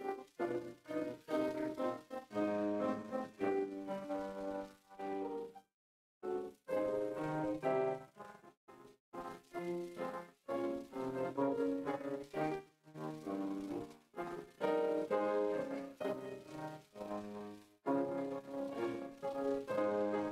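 Solo piano music, a slow melody with chords, that cuts out completely for about half a second a third of the way in.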